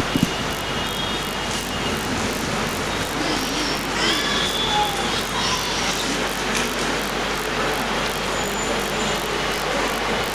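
Steady, even background noise with no distinct event.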